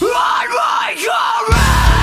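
Hard rock song: the bass and drums drop out and the singer yells a line almost alone, his pitch bending up and down, then the full band crashes back in about a second and a half in.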